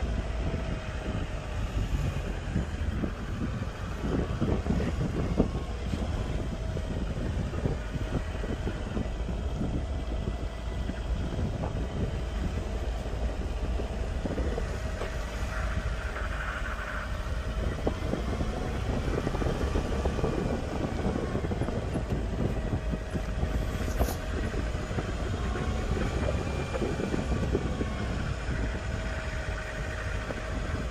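Golf cart driving along a paved cart path: steady running and rumble with a faint whine that drifts slightly up and down in pitch.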